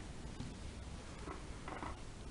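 Faint rustle of hands handling and turning a crocheted yarn piece, over low steady room noise.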